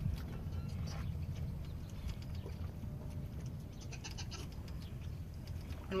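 A young goat kid mouthing and chewing a feeding bottle's rubber nipple, making faint scattered mouth sounds. It is not yet latched on and sucking. Under it runs a steady low rumble of wind on the microphone.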